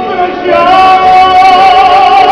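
Live singing with musical accompaniment: a solo voice climbs about half a second in to a long, high held note with vibrato.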